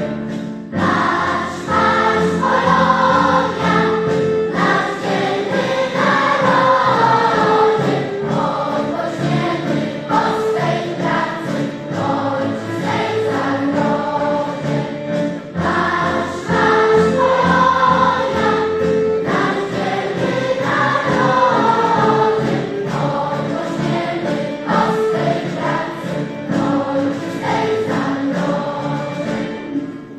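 Large mixed choir of children's and adult voices singing a song with instrumental accompaniment. The music swells about a second in and again halfway through.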